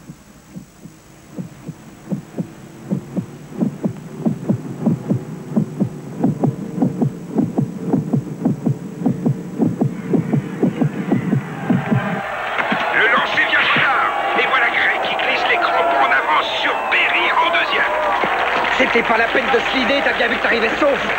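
Film suspense score: a throbbing heartbeat-like pulse, about two beats a second, over a low drone, growing steadily louder. It cuts off suddenly about twelve seconds in. A ballpark crowd then breaks into loud cheering and shouting.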